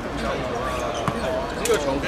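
A football being kicked on an artificial-turf pitch: two sharp ball strikes, one about a second in and a louder one near the end, under people talking nearby.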